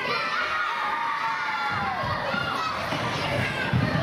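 A crowd of children shouting and cheering together, many high voices overlapping, one long call falling in pitch over the first two seconds. Low thuds of feet on the stage boards join in during the second half.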